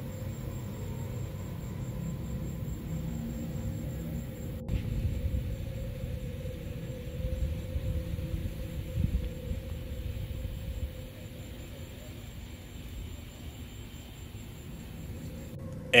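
Low rumbling outdoor background noise from a phone recording, with a faint steady hum over it; the sound drops out briefly about four and a half seconds in.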